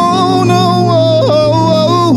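A man singing one long, high held note without words into a microphone, over a steady low accompanying tone. The note wavers slightly, steps down in pitch past the middle, and falls away at the end.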